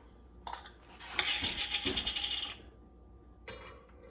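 Sweet relish being scraped out of a glass jar with a utensil: a clink, then a rasping scrape lasting about a second and a half, and a softer clink near the end.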